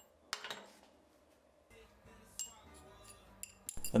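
Metal-on-metal clinks from a steel bar just cut on a bandsaw: a sharp clink with a short ring about a third of a second in, a second one around two and a half seconds, and a few light ticks near the end.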